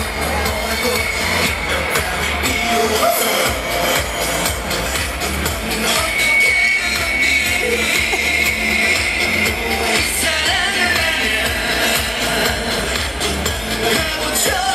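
K-pop song by a boy group played loud over a concert sound system: a heavy, steady bass beat with a male voice singing, heard from within the audience.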